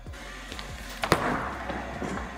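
Bowling ball landing on the lane with a single thud about a second in, then rolling away down the lane with a rising rumble.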